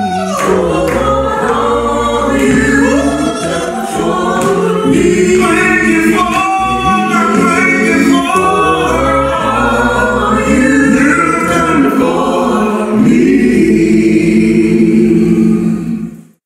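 A church choir singing a gospel hymn a cappella in several-part harmony, ending on a louder held chord that stops abruptly.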